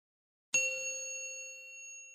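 A single bell-like ding, struck about half a second in and ringing out, fading over about two seconds.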